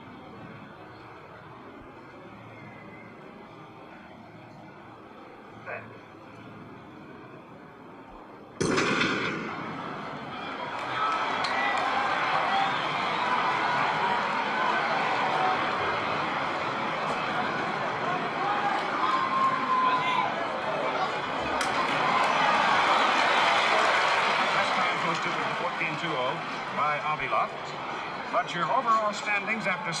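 Low stadium crowd murmur, then a single sharp starter's pistol shot a little past the middle of the opening third. A large stadium crowd then cheers through the hurdles race, swelling to its loudest in the later part.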